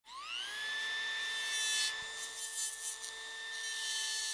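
High-speed rotary carving tool spinning up with a rising whine in the first half second, then running at a steady pitch. Brief bursts of grinding noise come about two seconds in.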